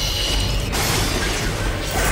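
Movie-trailer soundtrack: dense metallic, mechanical sound effects layered over music and a constant deep rumble. A bright hissing upper layer cuts off sharply under a second in.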